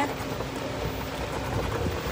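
Electric golf cart driving along a road: steady tyre and wind noise.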